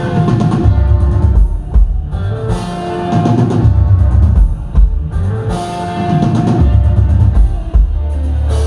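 Rock band playing live: electric guitar over drum kit and bass in an instrumental passage with no singing, the guitar holding long notes twice.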